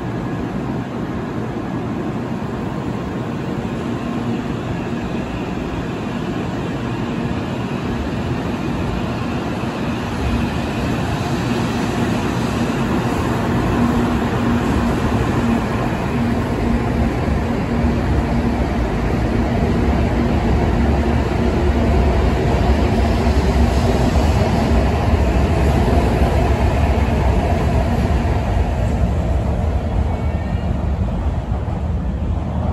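N700-series Shinkansen trains in a station: one pulling out from the next platform, then another approaching on the tracks. A steady hum with a held tone through the middle, and a low rumble that grows louder over the second half.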